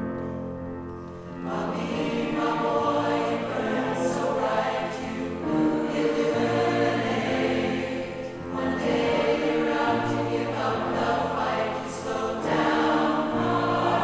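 Large mixed choir singing, the full choir coming in about a second and a half in and swelling and easing in phrases of roughly two seconds.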